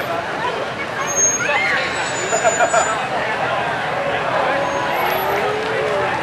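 Old farm tractors running as they drive slowly past, with people chatting close by.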